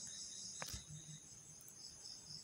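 Faint, high-pitched insect chirping in the background, pulsing steadily, with one brief click about two-thirds of a second in.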